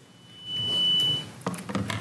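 A single steady, high-pitched electronic beep lasting about a second, followed by a few faint knocks.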